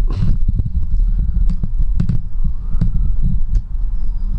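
Camera and microphone handling noise as the camera is lifted and swung round: a low rumble with dull thumps and scattered clicks.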